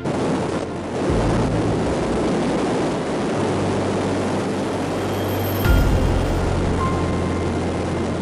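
Soyuz rocket engines at liftoff, a loud, continuous rushing roar that swells a little before six seconds in, with background music underneath.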